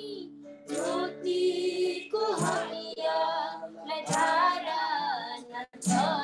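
A woman singing a devotional song in Nepali, solo, heard over a video call.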